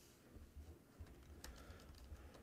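Faint computer keyboard typing: a handful of soft, irregularly spaced key clicks.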